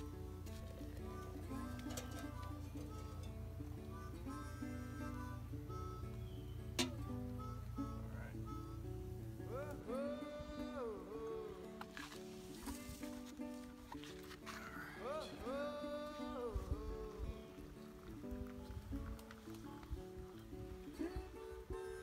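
Background music: a run of steady pitched notes with some wavering, sliding notes in the middle, over a low rumble that stops about halfway through.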